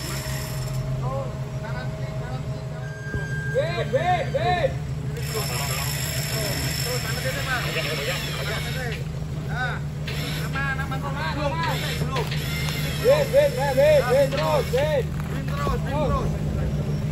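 Off-road 4x4's engine running steadily at low revs, with people's voices calling out over it now and then, loudest about four seconds in and near the end.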